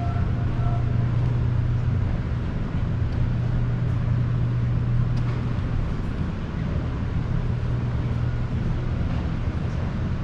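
Floor-standing air-conditioning units running: a steady low hum over a constant even rush of air.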